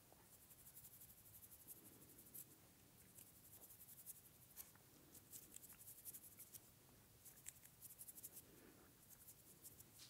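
Faint, crisp crackling rustle of hands rubbing and sliding over facial skin during a hands-only face massage, coming in clusters of fine crackles as the strokes pass close to the microphone.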